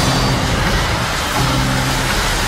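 Trailer sound design and score: a loud, dense rushing noise with low held notes at the start and again about a second and a half in.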